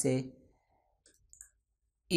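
A few faint computer mouse clicks a little over a second in, between stretches of near silence, after a spoken word at the start.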